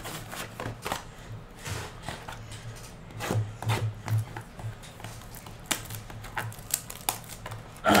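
Hands handling a trading-card box and its packs: scattered light taps, clicks and rustles of cardboard and plastic wrap.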